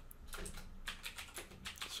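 Typing on a computer keyboard: a quick, faint run of about a dozen key clicks.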